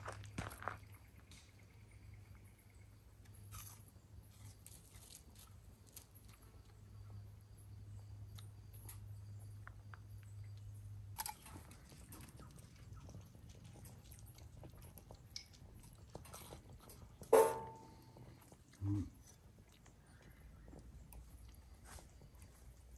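A person chewing and biting into crisp pan-fried ham-and-cheese bread rolls, with many small clicks and a low steady hum through the first half. About two-thirds of the way through, one short, loud pitched sound stands out.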